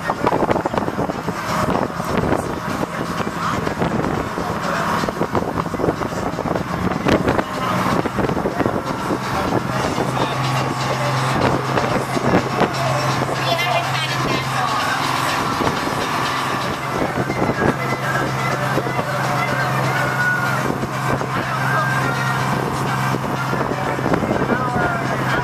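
Water taxi's motor running steadily under way, a low drone that gets stronger about eight seconds in.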